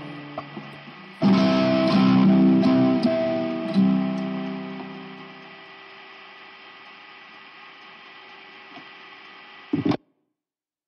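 Guitar chords struck about a second in and a few more times, then left to ring and fade into a steady amplifier hum and hiss; a short burst of sound comes right at the end before it cuts off to silence.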